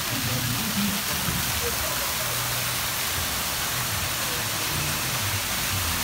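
Steady hiss of water falling from an artificial rockwork waterfall and splashing into the river channel, with low indistinct voices underneath.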